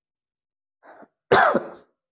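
A man clearing his throat with one loud, short cough about a second and a half in, after a faint short sound just before it.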